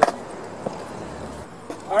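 A bucket of ice water dumped over a person: one sharp, loud splash at the start, then quiet.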